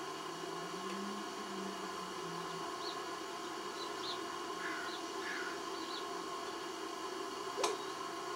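Steady low hum and hiss, with a faint distant voice in the first couple of seconds, a few faint short high chirps in the middle, and one sharp click near the end.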